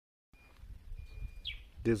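Dead silence at an edit, then faint outdoor background noise with a single short bird chirp about a second and a half in.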